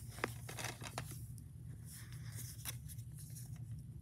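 Plastic DVD case being picked up and turned over on carpet: a few light clicks and scrapes, most in the first second and a half, over a steady low hum.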